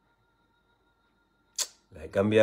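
Near silence with a faint steady whine, then about one and a half seconds in a short sharp hiss of breath as a man draws in air to speak. His voice begins at the very end.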